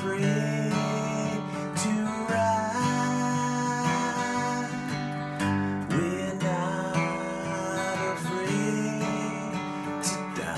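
Acoustic guitar strummed in steady chords, changing chord every second or so, with no singing over it.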